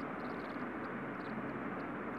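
Steady background room noise, with faint short scratches of a marker writing on a whiteboard.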